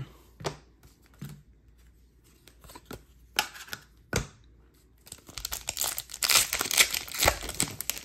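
A few light knocks and taps in the first half, then from about five seconds in a continuous crinkling and tearing as a foil hockey card pack wrapper is ripped open by hand.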